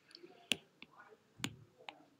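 Stylus tapping on a tablet's glass screen: two sharp taps about a second apart, with a few fainter ticks between and after them.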